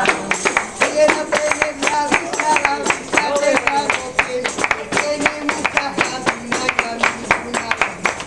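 A group of people clapping their hands in a fast, steady rhythm along with music and singing.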